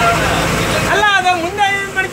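Bus engine running in the driver's cab, heard under a person's voice that comes in about a second in with long, wavering notes and is the loudest sound.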